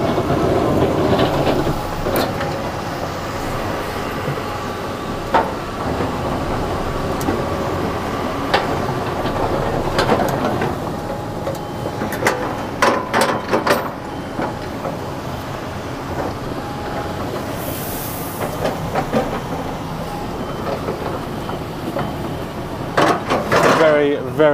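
Tipper lorry's diesel engine running at low speed, heard from inside the cab, with scattered knocks and rattles from the truck, a cluster of them about halfway through.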